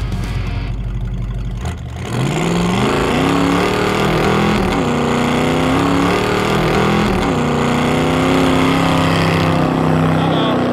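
A 500 cubic inch Cadillac V8 in a 1973 AMC Gremlin revving hard through a burnout. About two seconds in its pitch climbs and then holds high, dipping briefly twice and coming back up. It is run up to about 5,000 rpm against the rev limiter, hard enough to throw the belt off.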